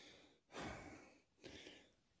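A man breathing out heavily twice, the first breath longer and fading out, the second short and fainter, with near silence around them.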